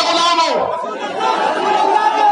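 Speech: a man's voice addressing a crowd through microphones, with crowd chatter beneath it.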